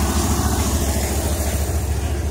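Fire truck engine idling, a steady low rumble.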